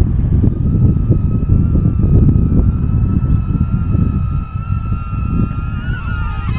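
Small DJI Neo quadcopter's propellers whining at a steady high pitch as it comes in and descends to land, the pitch drifting slightly upward near the end. Heavy wind buffeting on the microphone runs underneath and is the loudest part.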